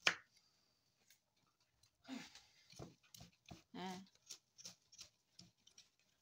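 Kitchen knife cutting ginger into strips on a cutting board: scattered light taps of the blade on the board. There is a short vocal sound about four seconds in.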